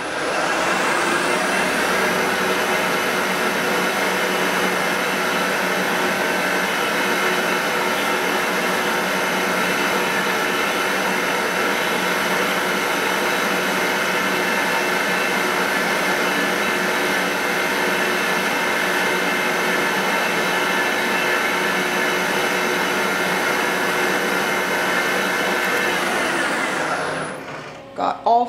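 Vertical milling machine's spindle running steadily, a whine of many steady tones, while a tap drill for a 3 mm thread is fed into an aluminium plate. It starts just after the beginning and fades out about a second before the end.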